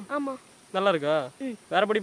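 An excited young voice calling out in several short bursts, over a steady high-pitched drone of insects.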